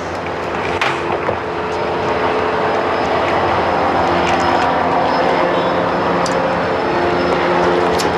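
A steady engine drone with a low hum in it, slowly growing louder.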